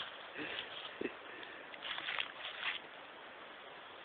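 A puppy's paws rustling through dry fallen leaves in faint, irregular crackles, bunched together about two seconds in.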